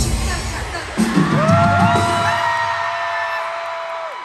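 Live band playing a short musical interlude: a pounding beat stops at the start, then about a second in a held chord swells in, its notes sliding up into pitch one after another and sustained before fading.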